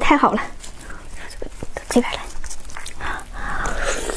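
Wet, sticky clicks and smacks of a glazed braised lamb rib being handled in plastic gloves and lifted to the mouth, with a short high hum from the eater right at the start and a biting click at the end.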